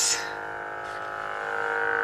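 Lightsaber soundboard hum from the lit saber's speaker: a steady electronic hum with many overtones that swells slightly toward the end.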